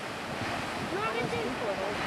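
Grand Geyser erupting: a steady rushing of water and steam from the jetting column, with people's voices over it from about half a second in.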